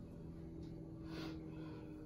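Faint steady low hum with one short, soft breath from the lifter about a second in, as he braces over the barbell.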